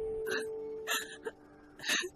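Film soundtrack: a held music note fades out, while three short breathy catches, like sobs or hiccups, come at intervals.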